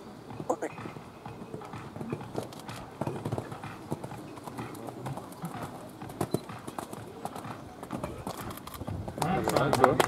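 Hoofbeats of a horse cantering on a sand arena.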